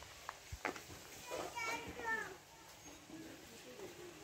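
Faint background voices, children among them, with a couple of light clicks.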